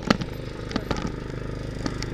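Small portable generator engine running steadily, with a few sharp clicks and knocks over it.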